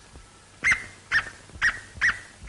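Cartoon dog yapping: short, high yaps about two a second, the first coming about two-thirds of a second in.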